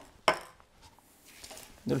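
A metal aerosol can of cocoa-butter velvet spray set down on the worktop with a single knock.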